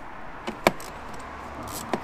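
A few sharp metallic clicks of a socket and ratchet being fitted to a bolt and worked in the engine bay, the loudest about two-thirds of a second in and another near the end, over a steady low hum.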